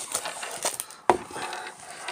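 Rustling and light tapping of packaging as a plastic-wrapped duel mat is pulled from a cardboard card-game box, with one sharp click about a second in.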